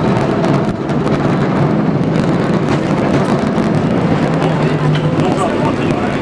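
Steady loud rumble and clatter of a San Francisco cable car in motion, heard from on board, with scattered rattles and a short steady hum about three-quarters of the way through.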